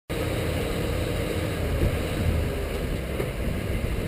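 Ford F-250's V10 engine idling steadily, a low rumble heard from outside the truck.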